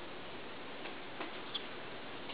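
Quiet room tone with a few faint, soft ticks about a second in, spaced about a third of a second apart.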